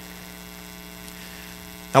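Steady electrical mains hum, a low even buzz carried through the sound system, with no change throughout; a man's voice starts speaking right at the end.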